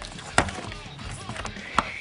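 Two sharp knocks, about a second and a half apart, over faint room noise.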